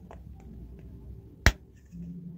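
A single sharp plastic snap about one and a half seconds in, as an LED bulb's frosted diffuser dome is pressed home onto its plastic base, with faint handling noise around it.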